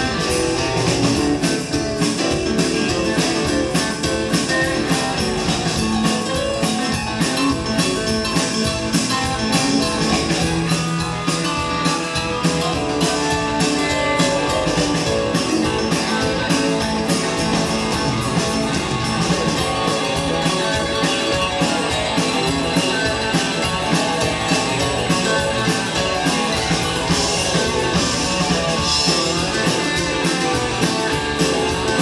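Live rock band playing an instrumental passage: electric guitars over a steady drum beat.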